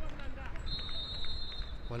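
Referee's whistle: one long, steady blast lasting a little over a second and starting about half a second in, signalling half-time.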